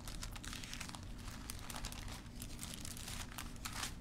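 Thin Bible pages being leafed through, a continuous soft crinkling and rustling of paper.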